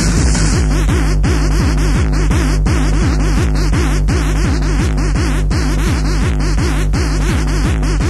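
Fast techno music with a steady, evenly repeating kick-drum beat and a continuous synth bass line.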